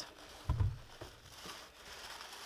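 Tissue paper rustling and crinkling as it is grabbed and pulled aside by hand, with a soft low thump about half a second in.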